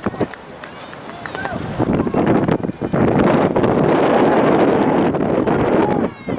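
Wind buffeting the camera's microphone: a rough, gusty rumble that is lighter for the first two seconds, then strong and loud. Faint voices call out beneath it.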